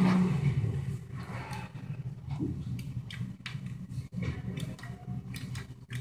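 A low steady hum stops a fraction of a second in. After that there is faint room tone inside a stainless-steel elevator car, with scattered light clicks and knocks.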